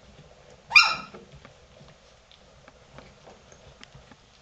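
A golden retriever puppy gives one short, high-pitched yelp about a second in, dropping in pitch at its end. Faint scratching and ticking from the pups crawling over their bedding continues around it.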